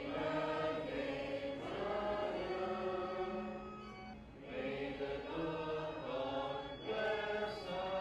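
Congregation singing a hymn together in long held notes, in phrases broken by short breaths about four and seven seconds in.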